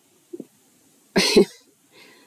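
A woman coughs once, briefly, a little over a second in, with a faint short sound just before it.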